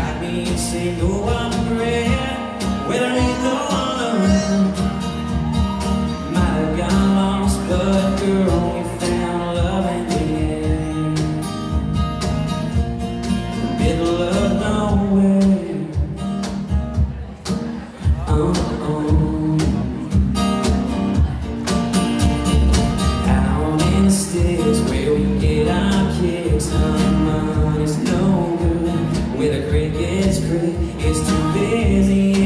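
Live country song played acoustic: a man singing over strummed acoustic guitar, a second guitar and cajon beats, with a brief dip in level about two-thirds of the way through.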